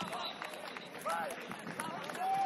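Footballers calling and shouting to each other across the pitch during open play: short, rising-and-falling calls near the start and about a second in, heard at a distance over outdoor noise.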